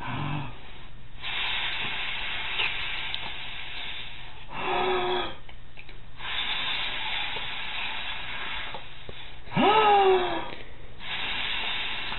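A man blowing long breaths of air at close range, hissing steadily, in a "big bad wolf" huff-and-puff game with a baby. The blowing is twice broken by a short voice sound, the second sliding up and then down in pitch.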